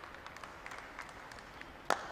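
Low crowd murmur with scattered claps, then near the end one sharp crack of a cricket bat driving the ball.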